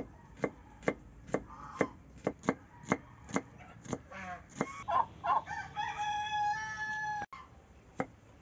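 Kitchen knife chopping red onion on a wooden board, about two strokes a second. Then, from about the middle, a rooster crowing: one long call held steady that cuts off abruptly near the end.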